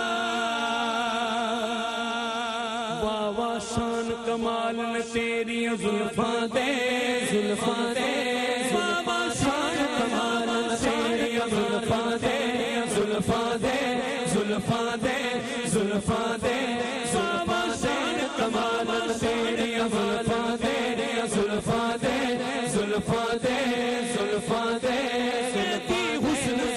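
A man singing Sufi devotional verse into a microphone, his voice held and wavering over a steady drone, with percussion joining about three seconds in and keeping a steady beat.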